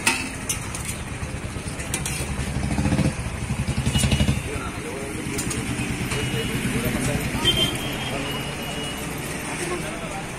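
Street traffic with a motorcycle engine running close by, loudest about three to four seconds in. Under it there is the low chatter of a crowd and occasional clinks of steel serving spoons against steel pots.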